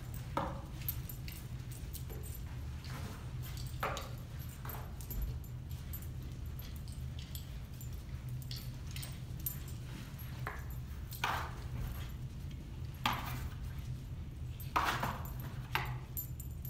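A small dog on a leash sniffing along a row of cardboard boxes: scattered short sniffs and soft jingles of its harness and leash hardware over a steady low room hum.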